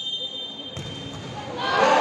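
A futsal ball is kicked in a penalty, a single thud about three-quarters of a second in. Spectators then shout, swelling to the loudest point near the end.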